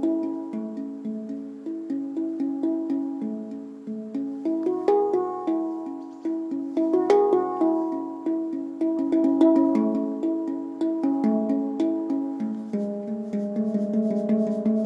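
Eanovea 8-note handpan prototype tuned to C# minor Pygmy (A = 432 Hz), played with the fingers: a continuous flow of struck steel notes that ring on and overlap, each strike fading before the next.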